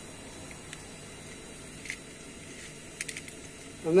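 A few faint, light clicks of a screwdriver and a small screw being worked loose from the metal bracket on a heater's controller board, with a short cluster of ticks near the end.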